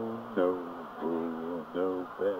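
A man humming or singing a wordless melody, a run of about four held notes that each slide into pitch.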